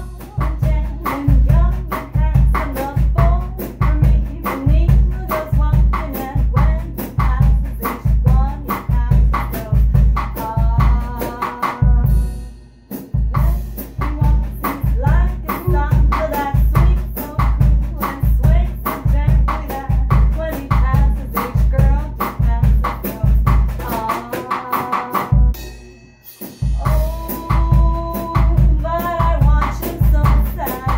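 A woman singing a bossa nova melody over a drum kit keeping a steady groove, with two brief breaks in the music, about twelve seconds in and again near the end.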